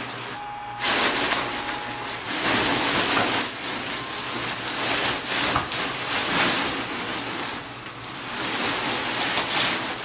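Inflatable costume's nylon fabric rustling and brushing as the wearer moves, in repeated swells of hiss that rise and fall every second or two, over the steady low hum of the costume's blower fan.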